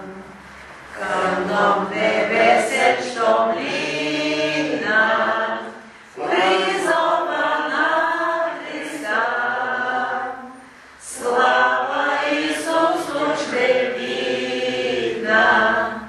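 A group of voices singing a devotional song, with short pauses between sung phrases about a second in, around six seconds and around eleven seconds.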